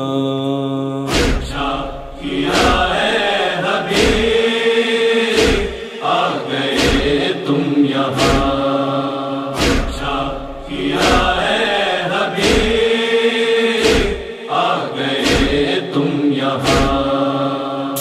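Interlude of a noha (Shia Muharram lament): a chorus of voices humming a sustained chant, with a heavy beat about every second and a half in the rhythm of matam, the chest-beating that accompanies noha.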